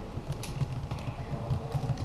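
Computer keyboard keys clicking as a short search phrase is typed, a few light clicks over a low steady rumble.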